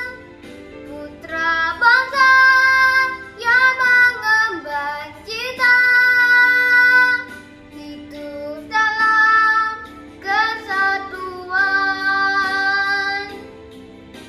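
A young girl singing a song in short phrases over a soft instrumental backing track. Her last phrase ends shortly before the close, leaving the backing playing on its own.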